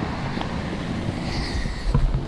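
Wind rumbling on the camera's microphone while the camera is carried, with a few faint handling knocks.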